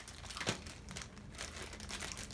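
Packaging crinkling in several short bursts as items are handled in a box, the sharpest about half a second in.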